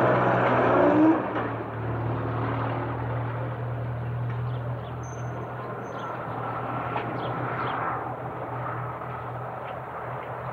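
A vehicle's engine revs as it pulls away in the first second or so, then settles into a steady low hum that slowly grows fainter.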